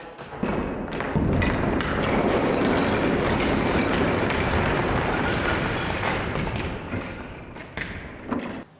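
LEGO bricks and minifigure parts pouring onto a pile: a dense, continuous rattle of small plastic pieces clattering together. It starts about half a second in and thins out near the end.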